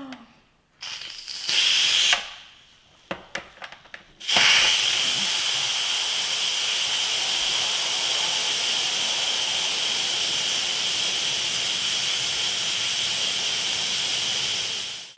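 Electric pressure cooker's steam-release valve venting steam to release the pressure at the end of cooking. A short hiss comes about a second in and a few light clicks around three seconds, then a loud, steady hiss of escaping steam from about four seconds in.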